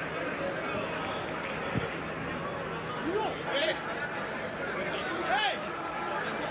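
Football match broadcast ambience: a steady stadium hum with a few short, distant shouts about three seconds in and again near five seconds.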